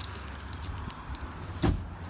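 A car door shut with a single solid thud about a second and a half in, after faint handling noise as a holdall is set on the back seat.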